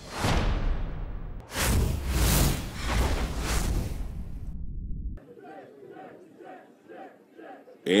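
Broadcast graphics transition sound effects: a series of loud whooshing swells over a deep bass rumble, cutting off sharply about five seconds in, followed by faint ballpark crowd noise.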